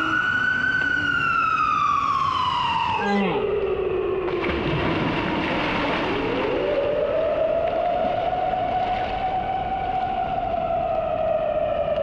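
A siren wailing in long, slow sweeps. Its pitch falls away over the first few seconds and dips low about three seconds in, then climbs again around six seconds in and holds high, easing down near the end, over a hiss of background noise.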